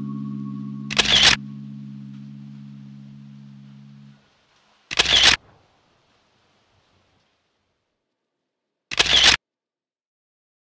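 Three short camera-shutter clicks, about four seconds apart. Under the first click, a held low music chord fades away and stops about four seconds in.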